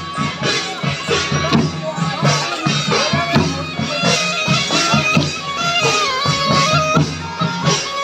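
A reed pipe played loudly over a steady drone, its held melody notes stepping up and down, with drums beaten along in a quick rhythm: Rajasthani folk procession music.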